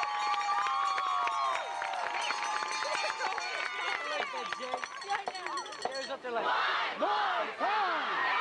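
A stadium crowd cheering, with many voices shouting and whooping at once; the yelling grows denser and louder about six seconds in.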